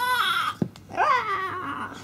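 A toddler's voice: two drawn-out, high-pitched vocal sounds, each rising and then falling, with a short click between them.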